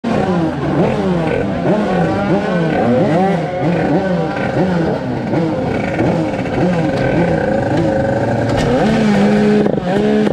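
Tuned two-stroke racing moped engine with an expansion-chamber exhaust, revved repeatedly while standing still, its pitch rising and falling about one and a half times a second. Near the end it is held at steady high revs.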